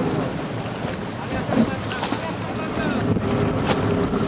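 Wind buffeting the microphone of a camera on a moving boat, over a steady rush of water along the hull.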